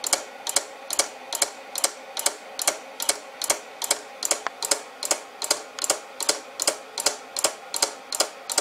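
Small micro switch salvaged from a microwave oven clicking in a steady rhythm, a little over two clicks a second, as it is tripped each time a magnet on the spinning turntable plate passes and pulses the drive coil of a homemade pulse motor.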